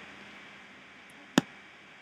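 A single sharp computer click about one and a half seconds in, over faint steady room hiss with a low hum.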